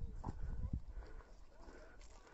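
Dull low thumps and bumps on a handheld phone's microphone, several in quick succession in the first second, then dying away.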